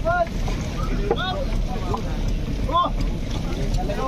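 Steady rumble of wind and sea around a fishing boat, with a few short shouts from the crew working the net and some faint clicks.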